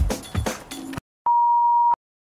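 Background music that cuts off suddenly about a second in. After a brief silence comes a single steady 1 kHz test-tone beep lasting under a second, the reference tone that goes with TV colour bars.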